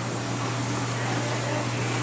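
Steady low hum under an even hiss, like a fan or air-handling unit running, with no changes or sudden sounds.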